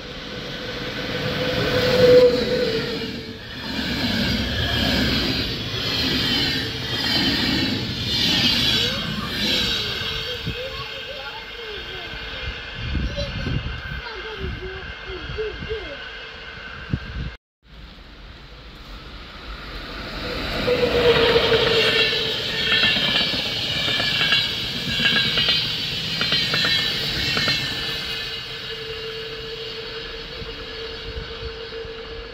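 Electric locomotive-hauled trains passing through a station: loud running and rail noise with a steady high whine over a low rumble, cut off suddenly about halfway, then a second train approaching and passing with the same mix.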